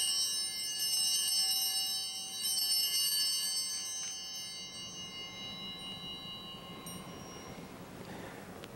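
Altar bells rung at the elevation of the consecrated host, marking the moment of consecration. A cluster of high, bright ringing tones is shaken a few times in the first three seconds, then dies away slowly.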